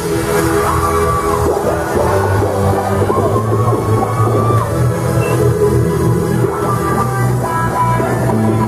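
Loud tekno dance music from a DJ set, with a steady heavy bass line and held synth tones over it.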